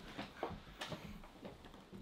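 Faint rustling and a few light, irregular clicks as a squirming tegu is held, its claws scrabbling against clothing and hands.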